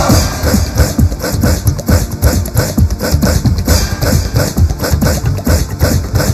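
Instrumental break of a fast Bollywood dance song: a loud, driving drum and percussion beat that comes in abruptly at the start, with no singing.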